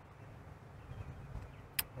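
Faint, steady low outdoor rumble with one sharp click near the end.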